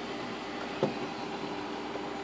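Opel Signum 2.2 engine idling with a steady, even hum. There is one short knock a little before a second in.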